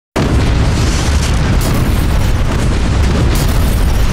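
Film sound-design explosions: a loud, continuous low rumble of blasts that starts abruptly, with brighter crackling surges about a second and a half in and again near the end.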